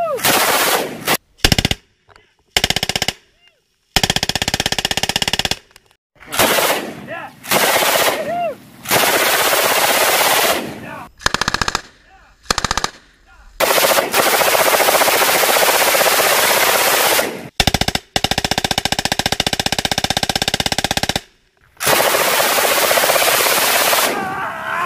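Belt-fed machine gun firing a series of bursts, some only a second or less and others running on for three to four seconds, with short pauses between them.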